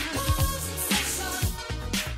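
1980s dance-pop music with a steady drum beat: low kick-drum thumps and a sharp snare hit about once a second, under sustained keyboard chords.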